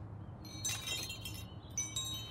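Chimes ringing in two short clusters of high, shimmering tones, like a wind chime stirring: one about half a second in, another near the end, over a faint low hum.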